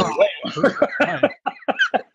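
People laughing over a video call: a falling voiced sound, then a quick run of short bursts.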